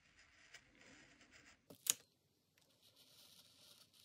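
Craft knife blade faintly scratching as it cuts through a paper page laminated with clear film on a cutting mat, with one sharp click a little before halfway, then a brief pause before the scratching resumes.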